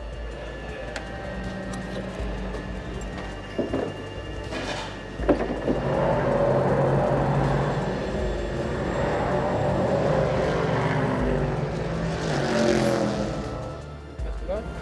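Race car engines on the circuit, swelling from about five seconds in and peaking again near the end, over background music.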